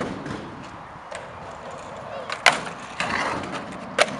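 Skateboard wheels rolling over asphalt, then a sharp crack of the board popping onto the ledge about halfway through, a scraping boardslide along the ledge and a clack as the board lands near the end.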